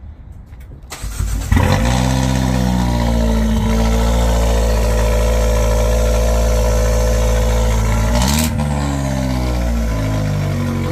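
2015 Fiat 500 Abarth's turbocharged 1.4-litre four-cylinder cold-starting, heard at the exhaust tip: it catches about a second in, revs up briefly, then settles into a steady fast idle that eases down slightly near the end. The engine is running again after a rebuild of its head, cam, turbo and timing.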